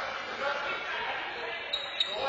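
Players' voices talking in a large, echoing hall, with one sharp smack near the end: a rubber handball bouncing on the court.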